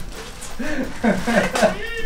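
People laughing: a run of short voice sounds, each rising and falling in pitch.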